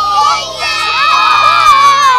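A group of young children shouting and cheering together in long held high-pitched shouts, with a brief dip about half a second in.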